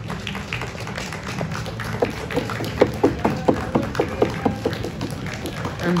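A run of handclaps, about four a second, from about two seconds in until near the end, as the teams walk out. Quiet stadium music plays underneath.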